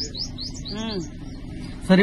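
A small bird chirping in a quick series of short rising chirps, about six a second, that trails off in the first half.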